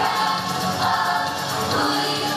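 Pop song with several voices singing together in unison over a backing track, continuing at a steady level.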